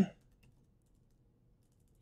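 Faint computer keyboard keystrokes, a few light clicks while text is being deleted and retyped.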